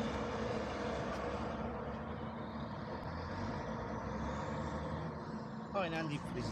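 Steady low rumble of road traffic, with a heavy truck's engine running in the background.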